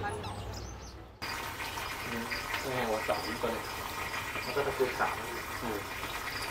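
Faint background chatter of people talking, not close to the microphone. About a second in, the sound fades and then changes abruptly to a different background.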